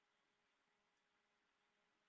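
Near silence: a pause with only a faint hiss.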